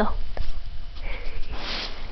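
A dog sniffing with its nose right at the microphone: a short breathy burst of sniffs starting about a second in and strongest near the end.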